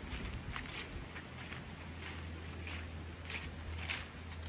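Footsteps crunching through dry fallen leaves at a walking pace, over a steady low hum.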